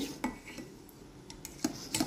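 Metal wire whisk stirring a curdling milk, vinegar and egg mixture in a steel pot, the wires giving a few light clinks and scrapes against the pot.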